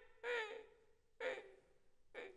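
Unaccompanied Kunqu voice of an elderly male performer: two short vocal syllables with sliding pitch, the first near the start and the second a little past the middle, separated by pauses.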